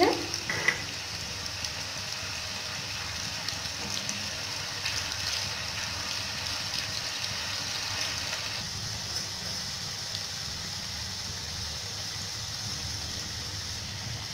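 Shredded potatoes deep-frying in hot oil in an iron kadai: a steady sizzle with small scattered crackles.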